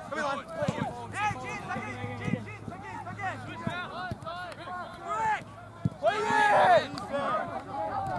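Many overlapping shouts and calls from players and sideline spectators at an outdoor soccer match, loudest in a burst of shouting about six seconds in, with a few sharp knocks of the ball being kicked.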